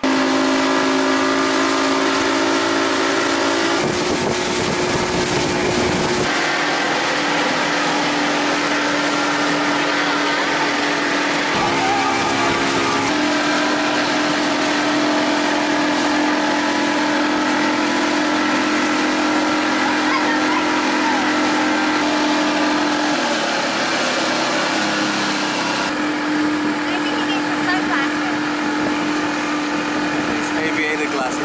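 Mercury outboard motor running at speed, a steady droning hum under a loud rush of wind and water. The engine's pitch jumps abruptly a few times.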